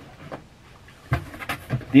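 Soft clicks and taps of boxed action-figure packaging being handled, with a dull thump a little over a second in as a package is set down or picked up.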